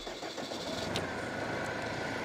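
SAME tractor's diesel engine idling steadily, with a brief click about a second in.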